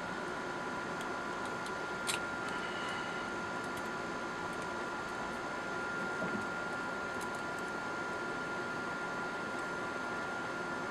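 Steady background hiss with a thin constant whine, broken by a few light clicks of the air rifle's metal breech parts being handled, the sharpest about two seconds in.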